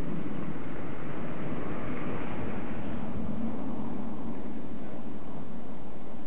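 A vehicle passing: a rushing noise swells about two seconds in and fades away by about four seconds, over a steady low rumble.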